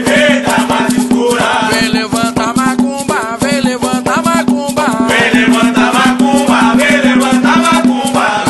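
Recorded Quimbanda ponto (Afro-Brazilian ritual song): voices singing in phrases over fast, steady hand percussion with a rattle.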